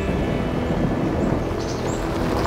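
Chevrolet Silverado ZR2 pickup truck driving over rough off-road ground: a steady mix of engine and tyre noise.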